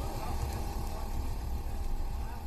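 Steady low rumble with a faint, even hum, like a running engine.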